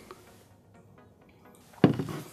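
Low room tone, then a single sharp knock near the end.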